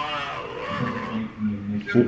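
Muffled speech during a phone call: one drawn-out voiced sound at the start, then a few broken, low words.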